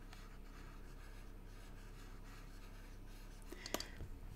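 Faint scratching of a stylus drawing on a tablet, over a low steady electrical hum, with a couple of small clicks near the end.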